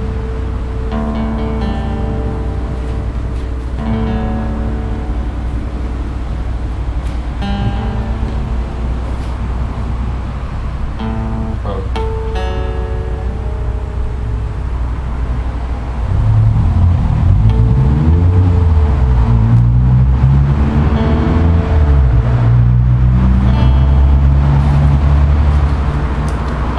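Steel-string acoustic guitar being tuned: single notes plucked, held and repeated, with one note sliding up in pitch about twelve seconds in as a tuning peg is turned. From about sixteen seconds a louder low rumble, rising and falling in pitch, joins in.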